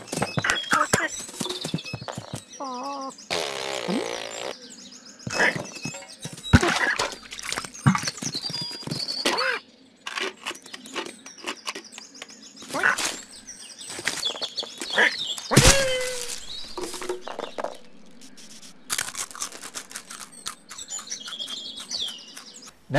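Cartoon sound effects of a cat and a squirrel scuffling: a busy run of knocks, thuds and scrabbling, high chirps and chattering, and a couple of short wavering cat cries.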